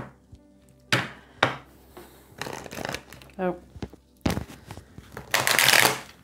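A deck of tarot cards being shuffled by hand: two sharp taps of the cards about a second in, light rustling, then a longer, louder rustle of the cards near the end.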